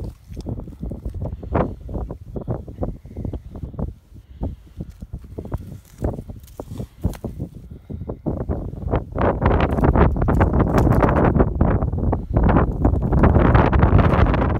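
Irregular crunching and scraping of snow and slushy ice around an ice-fishing hole as a line is hand-pulled up from a tip-up. About nine seconds in it turns into louder, continuous splashing and thrashing as the hooked fish reaches the hole.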